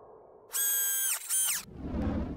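Two high whistle toots, a longer one followed by a short one, each dropping in pitch as it cuts off.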